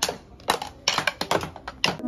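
Drumsticks tapping the pads of an electronic drum kit: about eight quick, irregular clicky hits, with no ringing drum or cymbal tone.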